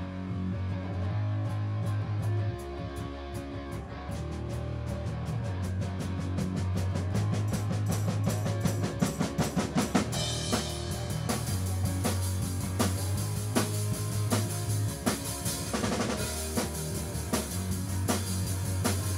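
Electric bass guitar and drum kit playing rock together, without vocals: the bass holds long low notes while the drum strokes grow steadily busier, with a quick run of hits a little before halfway and cymbals washing in from about ten seconds.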